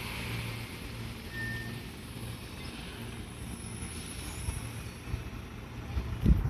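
Low, steady hum of two Fujikyu 6000-series electric trains (ex-JR 205 series) standing at a station platform, swelling and fading slightly.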